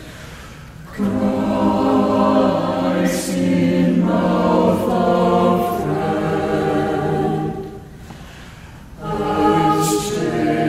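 Small mixed church choir singing a hymn phrase, 'Christ in mouth of friend and stranger', with a short break for breath at the start and again about eight seconds in.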